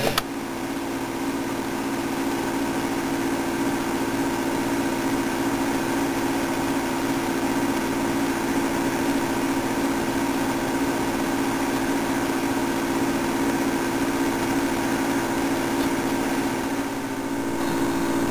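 Steady machine hum: a low drone with a fainter, higher steady tone above it.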